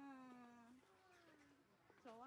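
A young child's drawn-out, meow-like vocal sound that slides down in pitch for about a second, followed by a fainter, lower one.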